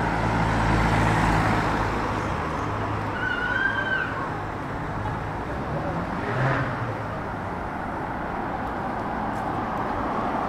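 A car drives past close by, its engine hum and tyre noise loudest about a second in, then fading into steady street traffic noise. A short high squeak or whistle is heard around the middle.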